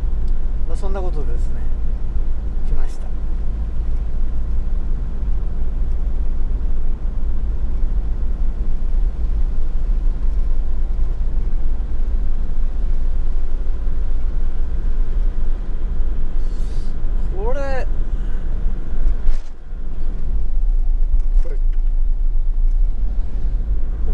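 Steady low rumble of a camper van's engine and tyres on a wet road, heard from inside the cab while driving.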